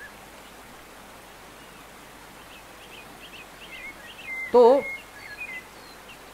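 Faint bird chirps, a run of short quick notes in the second half, over a steady hiss.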